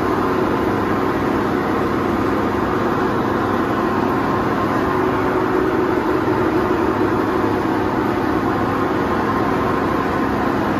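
A steady machine noise holding one level throughout, a dense hiss with faint held hums and no rhythm.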